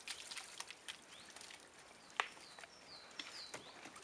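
A dog's paws and a person's footsteps on wooden decking: a few light taps, the loudest about two seconds in. A small bird chirps a few short falling notes in the background.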